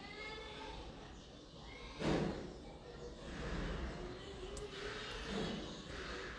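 Faint voices in the background, with a sudden thump about two seconds in and a softer one near the end.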